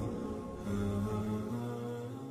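Intro music of long, held, chant-like notes, with a new, louder note coming in under a second in.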